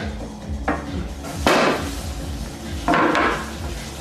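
Wooden picture frame knocking and clattering as a toddler pulls it apart and it falls onto the floor: several knocks, the loudest about a second and a half in.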